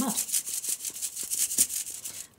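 Dry, sandy mud being shaken through a wire-mesh kitchen sieve: a gritty rasping of soil and small stones scraping over the metal mesh, in quick repeated shakes.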